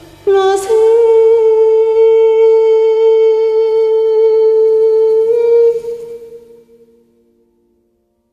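A woman's voice holds one long final note, sliding up into it at the start and sustaining it with a slight waver for about five seconds. It then stops and fades away with an echo-like tail.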